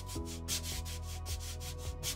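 A hand rubbing quickly back and forth over the satin-finished koa top of a Taylor GS Mini acoustic guitar, about five or six strokes a second, buffing the freshly cleaned finish. Faint steady tones sound underneath.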